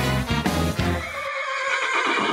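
Segment jingle: music with a bass line, which drops out about a second in as a horse whinny sound effect takes over.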